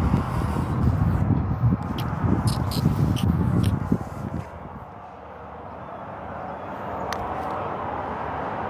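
Wind buffeting an outdoor microphone, an uneven low rumble for about four seconds with a few light knocks, then dying down to a softer steady hiss.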